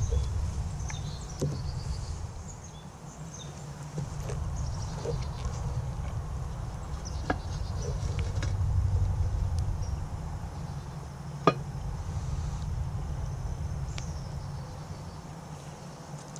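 A few sharp knocks over a low rumble as the cast-iron Dutch oven lid, heaped with hot coals, is lifted off with a metal lid lifter and set aside. The loudest knock comes about eleven seconds in.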